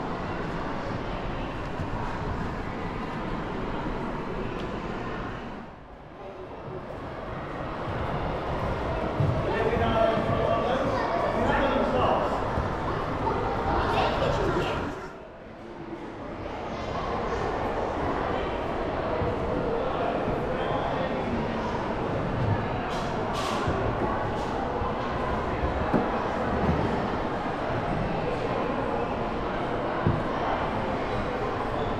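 Indistinct chatter of many visitors' voices in a large indoor public hall, with no single voice standing out. It dips briefly twice.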